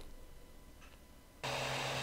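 Quiet room tone, then about one and a half seconds in an Anycubic 3D printer's running noise starts: a steady whir with a low hum.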